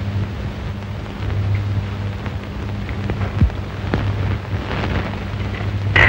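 Steady hiss and low mains-type hum of an old film soundtrack, with a few faint clicks.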